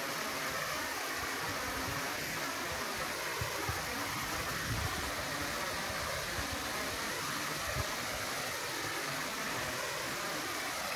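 Steady rush of a 60-foot waterfall falling into a deep, narrow rock gorge, heard from a distance as an even hiss of water.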